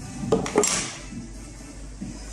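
Short clatter with a brief scraping rustle about half a second in, from a phone box and its tray being handled on a hard tabletop, then quieter handling.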